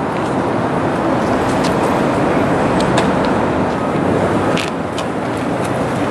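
Steady city street traffic noise, a dense wash of passing cars and other vehicles, with a few brief sharp ticks or clicks over it.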